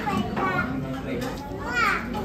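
Overlapping voices of children and adults chattering, with a child's high-pitched call near the end.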